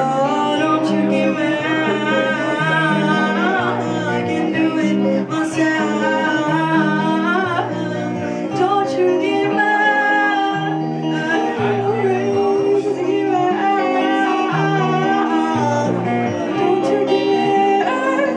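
Live song: a woman singing over electric guitar, with a line of low sustained notes stepping up and down beneath.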